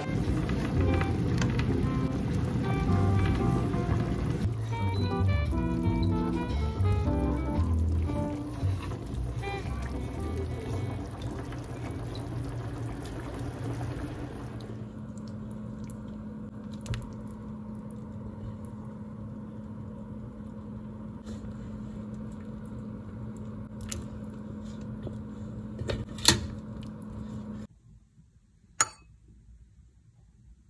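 Guitar-backed background music for roughly the first half, which then stops, leaving a steady low hum with a few sharp clicks; the loudest click comes near the end.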